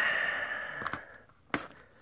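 A breathy sigh fading out over the first second, then a few sharp clicks and crackles of loose shrink-wrap plastic being cut with a utility knife, the loudest about a second and a half in.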